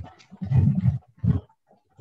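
A man's low, indistinct voice over a video call for about half a second, a short sound after it, then a brief silence.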